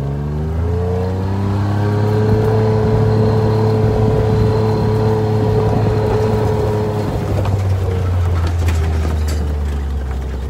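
Side-by-side utility vehicle's engine driving off across rough ground: its pitch rises as it speeds up over the first second or two, then holds steady.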